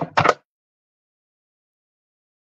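A brief fragment of a woman's voice in the first half-second, then dead silence.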